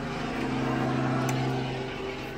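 Helicopter going over the house: a steady, unbroken drone.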